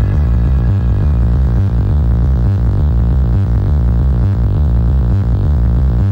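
Electronic dance music from a club DJ mix: a heavy, pulsing bass line on a steady beat. A higher synth line fades out about a second in.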